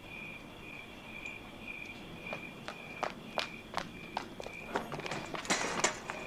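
Crickets chirping in a steady pulsing rhythm, about two chirps a second, with footsteps over them. The steps come more often and louder near the end, with a few sharper scuffs.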